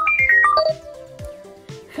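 A quick descending run of about six bright electronic notes in the first second, over steady background music.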